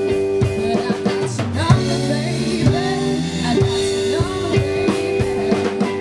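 Live pop-rock band playing: a young woman singing over electric guitar, bass guitar and drum kit.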